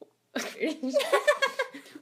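Women laughing in a quick string of bursts, starting suddenly about a third of a second in after a brief silence.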